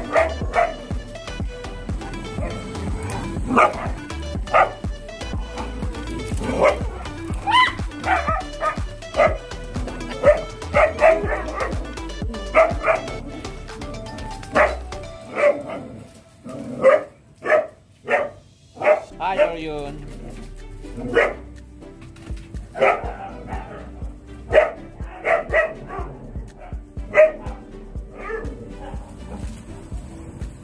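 A group of dogs barking and yipping in short, irregular barks as they play together.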